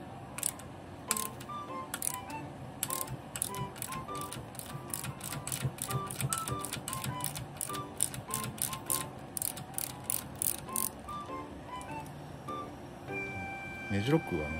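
Ratchet wrench clicking in quick irregular runs while a nut is spun off the damper rod of a motorcycle rear shock, with background music under it.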